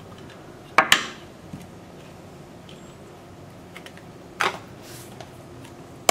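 Hard plastic and wooden stamping tools being picked up and set down on a tabletop: a sharp clack about a second in, a softer one a little past four seconds, and faint handling clicks between.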